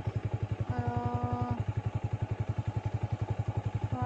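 Motorcycle engine running at a steady cruise with an even low throb, about twelve beats a second. A short steady tone sounds once for just under a second, about a second in.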